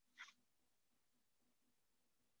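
Near silence, with one brief faint sound about a quarter second in.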